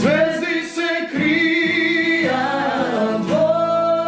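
Male and female voices singing a song together with long held notes, accompanied by a strummed acoustic guitar.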